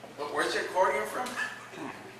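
A man's animated voice speaking into a microphone, high in pitch and swooping up and down, with a falling glide near the end.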